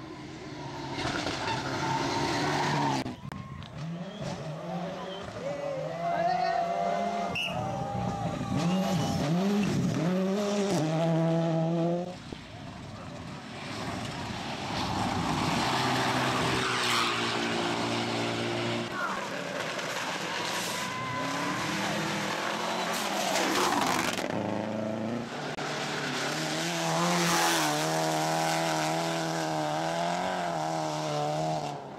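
Rally cars, including Mitsubishi Lancer Evolutions, passing at speed on a dirt stage, their engines revving up and down as the drivers lift and shift. The sound breaks off and restarts a few times as one car gives way to the next.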